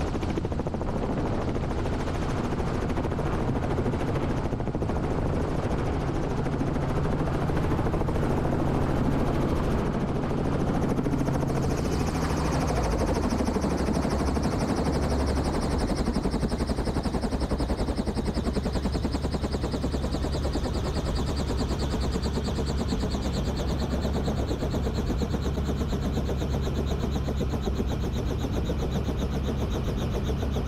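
Robinson R44 Raven II helicopter's rotor chopping steadily over its running piston engine as it sets down at the fuel pad. About twelve seconds in, the low tones drop and a high whine sets in, falling slowly in pitch as the rotor and engine slow toward idle.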